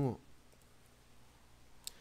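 A single sharp click of a computer mouse about two seconds in, advancing a presentation slide, after a short stretch of quiet room tone.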